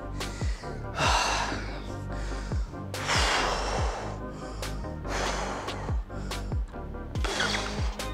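A man breathing hard, catching his breath after an exercise set: four long, loud breaths about two seconds apart. Background music with a steady beat plays underneath.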